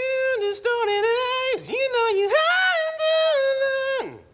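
A young man singing unaccompanied in long held notes, wavering in pitch with a dip partway through and a climb to a higher held note, cut off abruptly at the end. The singing is a little high and booming a little loud for his voice.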